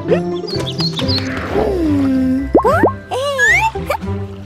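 Children's cartoon background music with comic sound effects: a few short high plinks, a long falling glide in the middle, then quick rising and swooping glides near the end.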